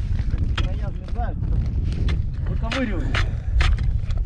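Wind rumbling on the microphone over open ice, with several sharp clicks and knocks from work at an ice-fishing hole full of slush, and a couple of short muttered vocal sounds.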